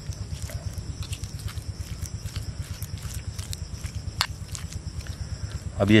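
A metal spoon stirring and mashing a soft butter and spice-paste mixture in an earthenware bowl, in a quick, even rhythm of about five strokes a second, with sharp clicks of the spoon against the bowl now and then.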